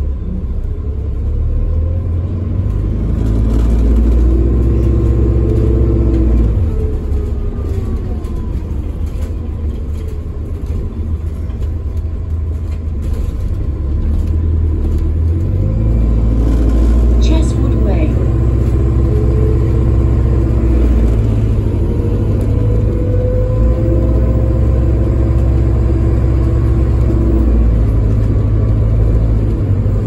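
Alexander Dennis Enviro 400MMC double-decker bus engine and drivetrain heard from inside the passenger saloon while driving: a deep rumble that builds over the first few seconds, eases off, then builds again about halfway through as the bus accelerates, with a faint rising whine over it.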